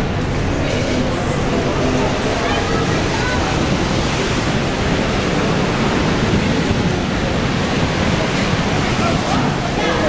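Steady, unbroken rush of Niagara's Horseshoe Falls heard at close range, a dense wall of water noise, with faint voices of people nearby under it.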